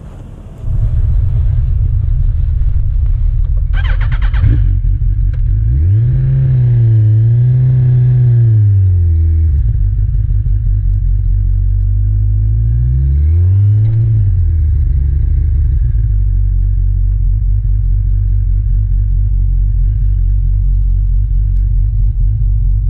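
Sport motorcycle riding off through a GoPro's microphone, with a heavy low rumble of wind and road noise that starts suddenly under a second in. The engine revs rise and fall twice, first from about six to nine seconds and again briefly around thirteen seconds. There is a short clatter about four seconds in.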